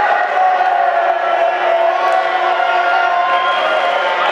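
Spectators' voices: a crowd shouting and calling out, many voices overlapping and drawn out.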